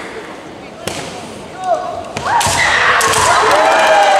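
Women kendo fencers shouting kiai, long drawn-out cries that start about halfway through and grow loud, with sharp cracks of bamboo shinai striking: one about a second in and a few more among the shouts.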